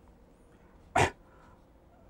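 A man says one short word, "right", about a second in; otherwise only low room tone.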